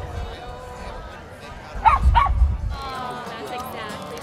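A dog barks twice in quick succession, two short sharp barks about a third of a second apart, over background voices.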